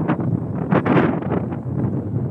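Wind buffeting the microphone in an uneven rumble, with a stronger gust about a second in.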